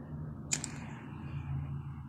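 A handheld lighter clicking: one sharp double click about half a second in, over a low steady hum.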